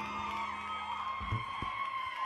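The band's last held chord dying away at the end of a live song, with faint whoops from the audience. Two soft low thumps come about a second and a half in.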